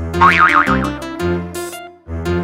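A cartoon boing sound effect with a quickly wobbling pitch in the first second, over background music of repeated short notes.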